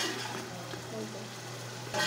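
Tomato and garlic masala frying in oil in a steel pot, a soft sizzle as it is stirred, over a steady low hum.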